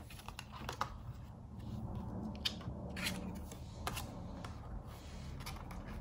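Tarot cards being drawn and gathered by hand: soft sliding of card stock with about five light clicks scattered through.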